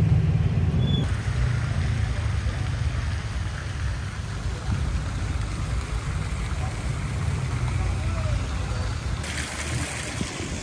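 Steady outdoor street ambience: a low traffic rumble with a hiss of noise above it. The noise changes character about a second in and again near the end.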